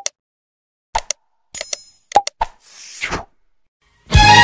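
Subscribe-button animation sound effects: a run of sharp mouse clicks, a short bell ring about a second and a half in, and a brief swoosh near the end.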